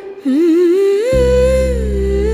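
A woman humming a slow, ornamented melody line wordlessly. It wavers and climbs in pitch at the start. A low sustained bass note comes in underneath about a second in.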